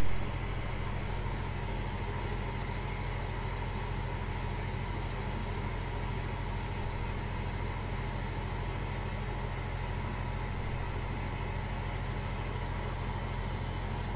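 Aquarium air pump running with a steady low electrical hum, after a brief louder bump at the very start.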